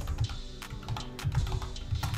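Typing on a computer keyboard: a quick run of separate keystroke clicks as a word is typed, over steady background music.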